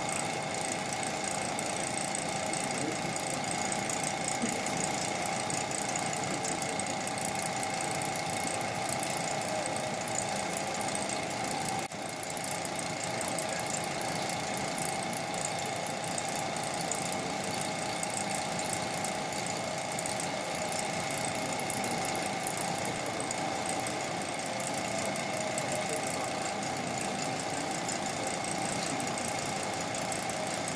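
Epilog laser cutter running a vector cut through a wooden sheet: a steady mechanical whir with a constant high whine throughout.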